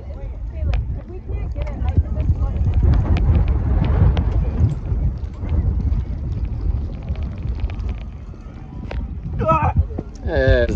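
Wind buffeting the microphone in an uneven rumble, with faint distant voices and a few scattered clicks.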